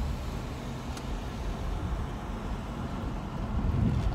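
Car engine and road noise heard from inside the cabin while driving: a steady low rumble that swells slightly near the end.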